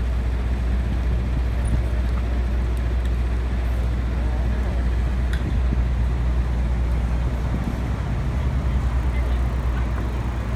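City street traffic noise: a steady low rumble of cars and engines on a busy avenue, with no distinct single event standing out.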